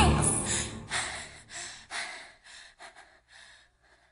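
Music cuts off abruptly, followed by a run of short breathy noise bursts, each fainter than the one before, dying away within about three and a half seconds.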